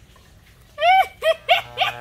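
A small dog yaps about four times in quick succession, each yap short and high. Near the end, electric hair clippers start up with a steady buzzing hum.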